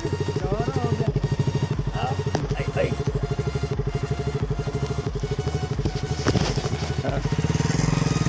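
A KTM RC sports bike's single-cylinder engine running steadily as it rides a rutted mud track, with one sharp knock about six seconds in.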